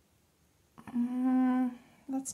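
A woman hums a single steady 'mmm' for about a second, starting a little before the middle: a doubtful hum at a stamping result she is not happy with.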